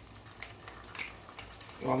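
Wooden spoon scraping ají amarillo paste out of a small glass bowl into a pot, with a few light clicks and taps.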